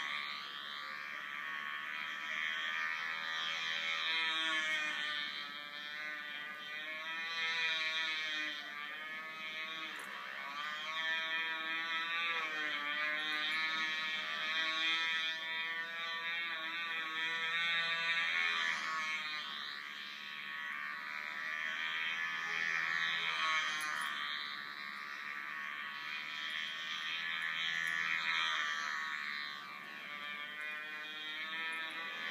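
Small glow engine of a control-line stunt model airplane running at full speed in flight, a buzzing whine whose pitch and loudness rise and fall every few seconds as the plane circles and manoeuvres. Heard played back through a TV speaker.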